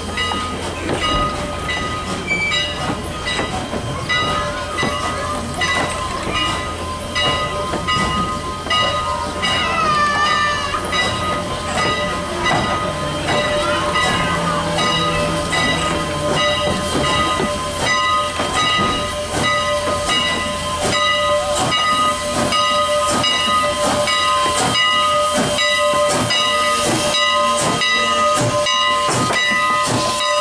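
A steam locomotive standing at the platform, hissing steam with several steady tones held throughout. A regular beat of short pulses grows louder through the second half.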